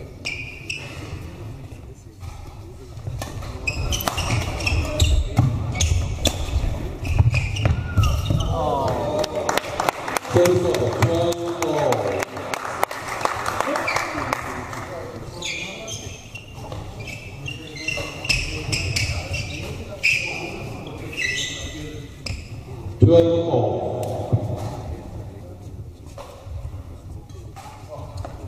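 Badminton doubles rally in a large hall: sharp clicks of rackets striking the shuttlecock and short squeaks from the court, with shouts and voices echoing around the hall.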